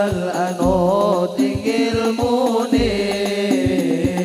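Banjari hadroh ensemble performing a sholawat: voices singing over frame drums (rebana), with deep bass-drum strokes about every two seconds between lighter hand strikes.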